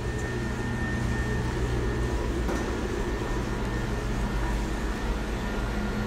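Steady low mechanical hum of running machinery, with a faint thin whine held above it.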